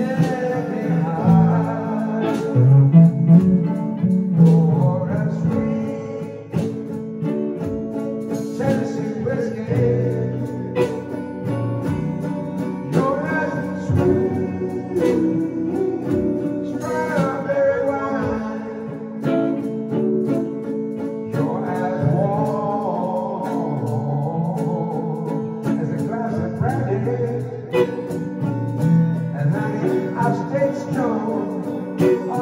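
Two electric guitars playing a slow country-blues ballad, with a man singing over them at times.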